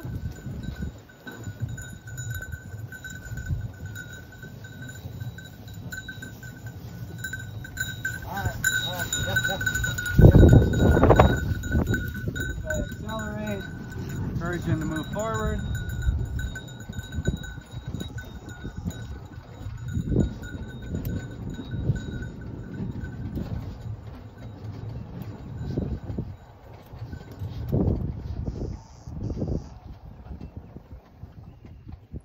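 A dog bell on a running bird dog ringing steadily, stopping about three quarters of the way through as the dog stops. Low thumps of footfalls and wind on the microphone run underneath, loudest about ten seconds in, with a few short pitched calls in the middle.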